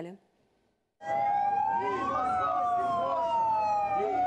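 A siren wailing after a second of silence. One tone rises and then falls over about two and a half seconds, while a second tone holds and sinks slowly, with voices beneath.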